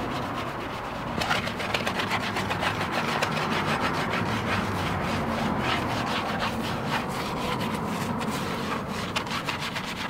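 A brush scrubbing the soapy barrel of a wheel, in rapid back-and-forth strokes that begin about a second in.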